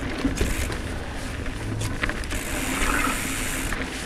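Mountain bike riding along a rough dirt singletrack: steady rumble of tyres and wind on the bike-mounted camera's microphone, with scattered knocks and rattles from the bike. There is a brief hiss in the second half.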